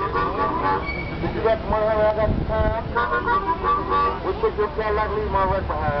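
Blues music from a street performer, a melody line of held notes that bend in pitch, with wind rumbling on the microphone.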